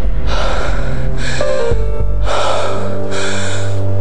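Edited background music with a deep, steady bass and held tones, overlaid by about four short hissing swells.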